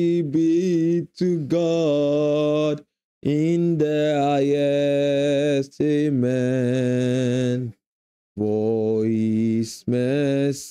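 A single voice chanting long, held notes in slow worship, in drawn-out phrases of a few seconds each, separated by brief silences.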